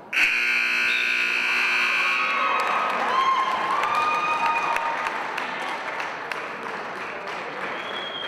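A gym scoreboard buzzer sounds loudly for about two and a half seconds, marking the end of a wrestling match. The crowd then applauds and cheers, with scattered claps and shouts.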